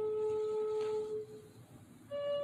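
A flute-like wind instrument holds the last, lowest note of a descending phrase, which fades out a little over a second in, followed by a short pause in the melody.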